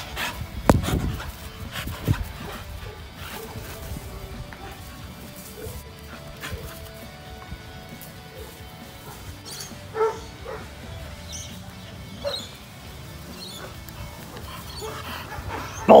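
Staffordshire bull terriers at play, with a thump about a second in and short barks about ten and twelve seconds in.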